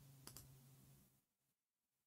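Near silence with two faint computer mouse clicks in quick succession, then a faint low hum that cuts off a little after a second in.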